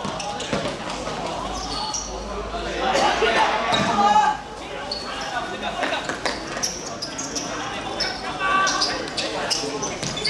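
A football being kicked and bouncing on a hard outdoor court in a match, several sharp thuds spread through the time, with players calling out at times.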